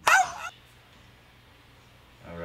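A single short, high-pitched yelp-like cry about half a second long, then quiet room tone.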